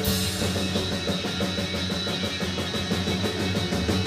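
Live rock band playing loudly: drum kit, electric guitars and bass guitar together. The drums and bass come in at the very start with a jump in loudness, then keep a steady, regular beat.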